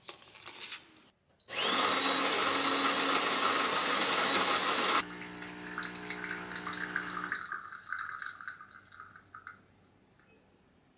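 Fully automatic espresso machine making a shot. Its built-in grinder runs for about three and a half seconds with a whine that rises and then holds steady. The pump then hums for about two seconds as espresso streams from the twin spout into a glass cup, and the flow thins to a trickle that stops near the end. In the first second there are a few soft clicks as a plastic dessert pack is handled.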